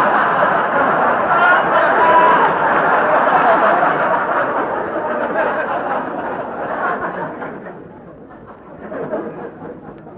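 Studio audience laughing at a punchline on a 1940 live radio broadcast: a long laugh that dies away after about seven or eight seconds.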